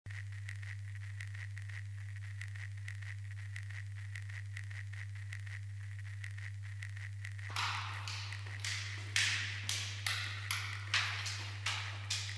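Footsteps echoing in a stairwell, about two a second, starting a little past halfway. Under them runs a steady low electrical hum with a faint high tick about three times a second.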